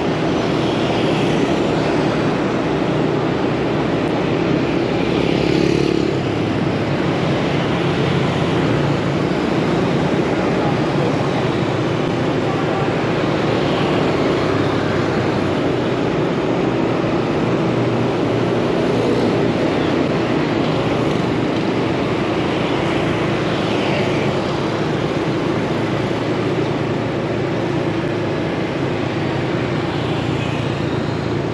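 Steady road noise of riding through city traffic on a motorbike: scooter and car engines running, with tyre and wind noise.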